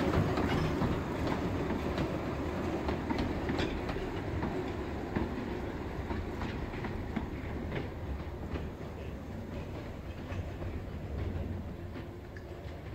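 Narrow-gauge steam train, hauled by a Decauville 0-4-0 locomotive, running on the line: a steady rumble with wheels clicking over the rail joints, slowly getting quieter toward the end.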